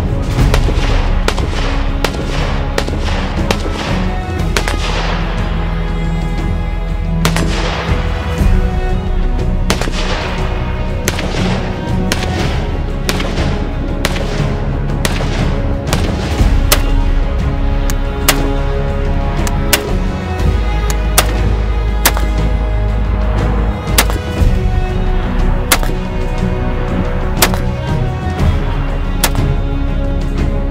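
Background music with a series of shots from a Vz.52 semi-automatic military rifle, fired repeatedly, some in quick succession.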